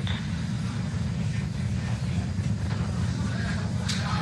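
Steady low rumbling noise from the launch pad, with a fainter hiss above it and one short click near the end; the fuelled Falcon 9 stands before engine ignition.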